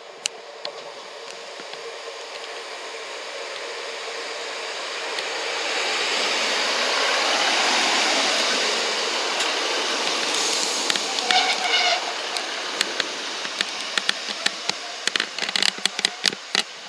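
GWR Class 150 Sprinter diesel multiple unit running in along the platform. Its noise swells to a peak as it passes close by, then eases off as it slows. About ten seconds in there is a brief squeal, followed by a run of sharp clicks and ticks as it draws to a halt.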